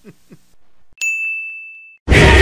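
A short burst of laughter ends, and about a second in a single bright bell-like ding strikes and rings on one high tone, fading away over about a second.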